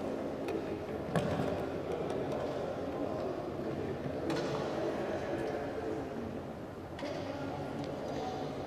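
Background chatter of several voices in a large hall, with a few faint knocks and clicks: about a second in, near the middle and near the end.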